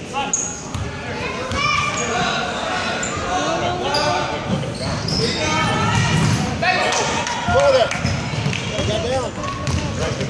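A basketball being dribbled on a hardwood gym floor, with repeated bounces and on-court sounds under the unintelligible chatter and calls of spectators and players, echoing in a large gymnasium.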